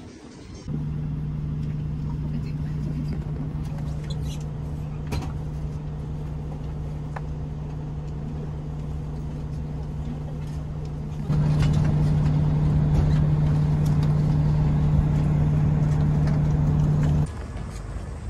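Steady low hum of a bus heard from inside the passenger cabin, its engine drone holding one pitch. It gets abruptly louder about eleven seconds in and cuts off sharply near the end.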